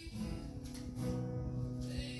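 Acoustic guitar strummed, two chords left to ring, the second about halfway through.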